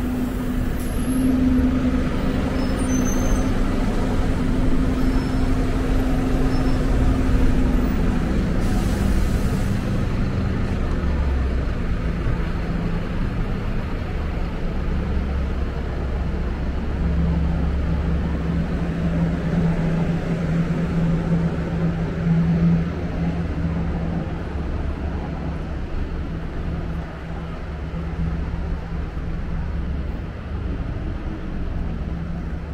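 City road traffic with heavy vehicle engines running close by: a steady low rumble and engine hum, the hum dropping in pitch partway through.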